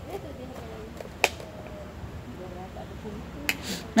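A kitchen knife tapping a wooden cutting board while chopping: one sharp click about a second in, and a smaller click with a brief scrape near the end.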